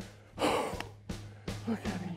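A man's loud excited gasp about half a second in, over background music that begins with a low held bass note, with guitar notes coming in near the end.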